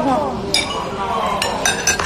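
Cutlery clinking against plates and glassware at a dining table: one sharp clink about half a second in and a quick run of several more in the second half, over voices.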